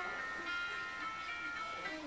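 Cell phone ringing for an incoming call, its ringtone a song playing through the phone's speaker in held musical notes.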